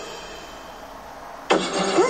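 Broadcast audio: a faint fading tail of the previous advert, then, about one and a half seconds in, a sudden loud car engine starting sound that opens the next radio advert.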